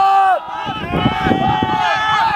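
Several men shouting drawn-out, wordless calls that overlap, one loud call in the first half second and more from about a second in.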